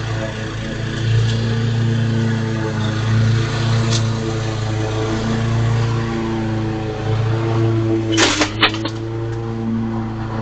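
Small engine of a walk-behind lawn mower running steadily. About eight seconds in, a sudden harsh burst of noise, twice in quick succession, cuts across the engine sound.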